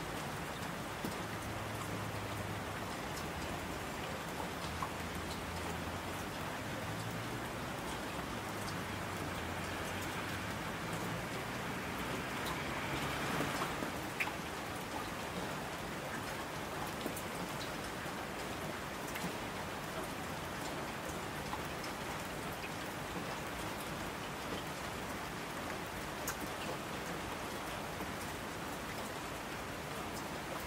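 Steady heavy rainfall, a dense even hiss of drops with scattered sharper ticks. A low rumble runs underneath for the first part, swelling briefly about halfway through and then dying away.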